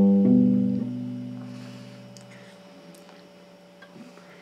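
Stratocaster-style electric guitar: a chord struck right at the start and changed a moment later, then left to ring and fade out over about two seconds, over a steady electrical hum.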